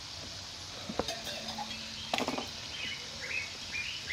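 A bird chirping repeatedly in short falling notes, about two or three a second, in the second half, over a steady background hiss. A sharp click comes about a second in and a short burst of sound a little past the middle.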